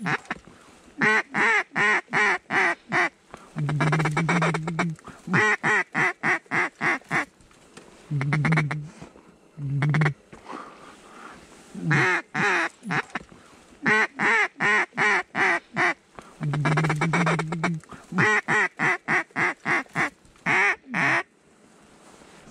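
Mallard duck call being blown: repeated runs of quick, evenly spaced hen quacks, several a second, with a few longer drawn-out quacks between the runs.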